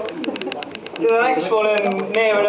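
A few people clapping, thinning out over the first second. Then, about a second in, a man's voice calls out in a long, drawn-out, hooting vowel rather than words.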